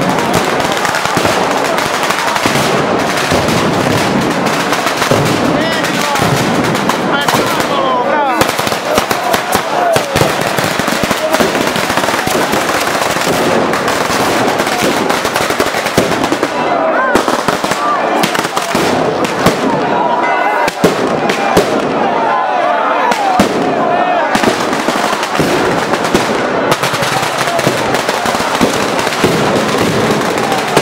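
Strings of firecrackers hung overhead exploding in a loud, unbroken rapid crackle of bangs, with no pause for the whole stretch.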